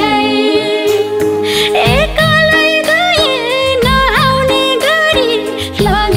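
Nepali Teej song: a sung melody with heavy wavering ornaments over a band accompaniment with a steady beat.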